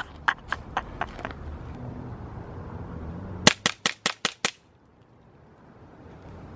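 BB pistol fired in quick succession: six sharp cracks in about a second, starting about three and a half seconds in, emptying the clip. A few lighter footsteps on dry dirt come first.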